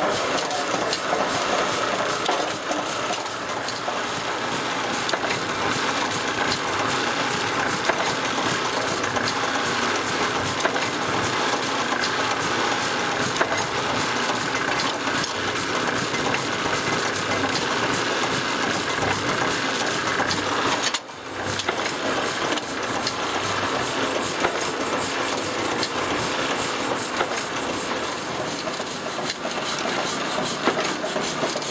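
Chandler & Price platen letterpress running steadily, with a dense run of regular mechanical clicks and clatter as the platen opens and closes on each hand-fed card for debossing. The noise breaks off briefly about two-thirds of the way through.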